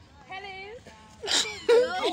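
Women's wordless cries of surprise and delight: a soft wavering vocal sound, then louder high-pitched squeals from a little past halfway.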